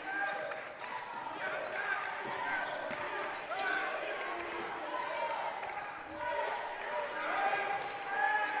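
A basketball being dribbled on a hardwood gym floor, faint short bounces under scattered voices of players and spectators in the hall.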